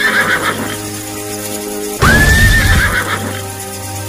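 A loud shrill animal-cry sound effect over steady background music: a cry that rises quickly, holds, then wavers, with a low thump under it. It comes once about two seconds in, after the tail of an earlier one at the very start.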